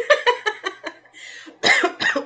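A woman coughing in a quick run of short bursts that fade, followed by a breath.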